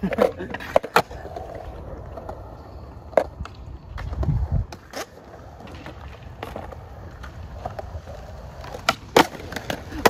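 Skateboard wheels rolling on concrete, with sharp clacks of the board. A pair of loud clacks near the end comes as a trick is landed.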